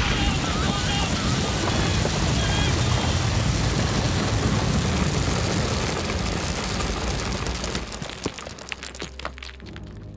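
A heavy cascade of grain seeds pouring down and piling up, a dense rushing rattle that thins to scattered patters of single seeds falling and fades near the end.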